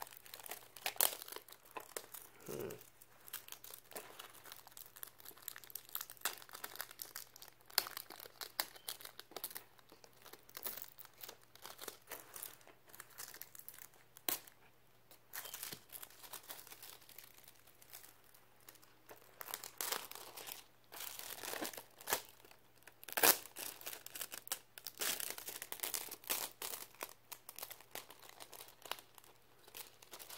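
Clear plastic shrink-wrap being peeled and torn off a DVD case, crinkling and crackling irregularly with sharp clicks.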